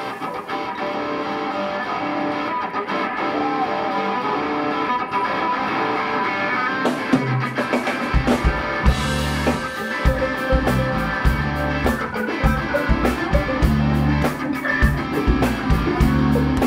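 Live blues band: electric guitars vamp on one chord. About halfway through, bass and drums come in and the full band plays a steady groove with regular cymbal strikes.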